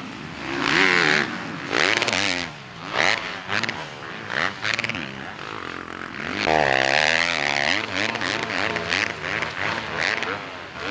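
Yamaha YZ450F four-stroke motocross bike's engine being ridden hard, revving up and dropping back again and again in quick bursts of throttle. About six and a half seconds in it holds a longer, higher rev for a second or so.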